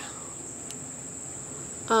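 Crickets calling, a steady high-pitched drone without pause.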